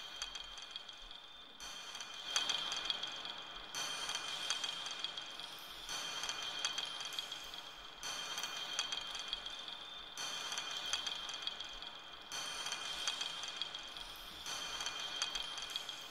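Looped electronic texture of dense, high clicking and clinking over a steady high tone. It repeats in blocks that shift about every two seconds.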